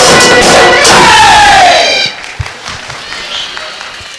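Bihu folk music from dhol drums and a pepa buffalo-horn pipe, closing with a long falling note about a second in, then stopping suddenly at about two seconds. After it comes a much quieter crowd murmur with a few thumps.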